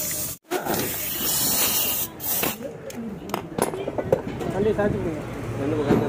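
Pneumatic impact wrench working a scooter's rear wheel nut, giving a loud burst of air hiss for about a second and a half just after the start, followed by voices.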